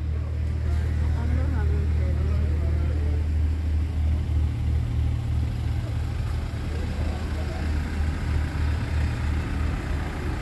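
A Toyota passenger van's engine idling: a steady low hum, with faint voices in the background.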